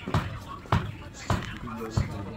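Footsteps walking at an even pace, a thud a little under every second-and-a-half beat: about two steps a second.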